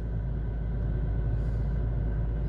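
Steady low rumble and hum inside a stationary car's cabin.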